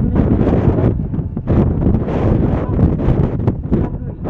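Wind buffeting the microphone: a loud, gusty rumble that swells and dips unevenly.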